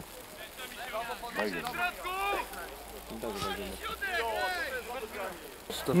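Several people's voices talking quietly and at a distance, with a close voice starting up at the very end.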